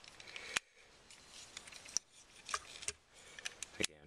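Hard plastic parts of a Voyager-class Transformers Optimus Prime action figure clicking as they are tabbed and snapped into place during transformation: several sharp clicks, the loudest about half a second in.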